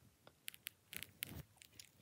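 A few faint, soft clicks and rustles close to the microphone, scattered through the second half: small handling sounds from toy figures and fingers on a fleece blanket.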